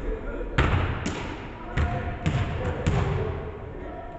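Basketballs bouncing on a hardwood gym floor: about six sharp, unevenly spaced bounces, each ringing briefly in the big hall.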